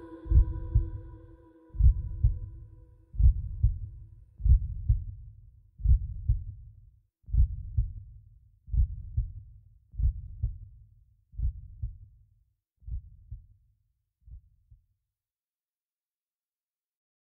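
A slow heartbeat, a double thump about every second and a half, growing fainter until it stops about fifteen seconds in. Held musical tones die away during the first few seconds.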